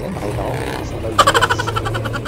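Road traffic close by: a vehicle engine running with a low steady hum, joined a little over a second in by a rapid pulsing pitched sound.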